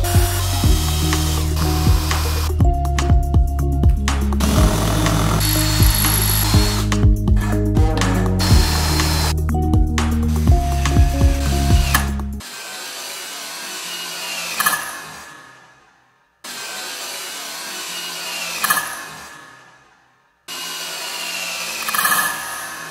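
Music with a bass line and a clicking beat for about the first twelve seconds, over drilling into the end of a metal shaft. After the music stops, a hand tap cuts a thread in the drilled hole, making metallic scraping and squeaks in short takes that each fade out.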